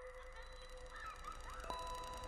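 Quiet electronic soundtrack: steady held sine-like tones, with a new higher tone coming in near the end and a few faint short chirp-like pitch glides around the middle.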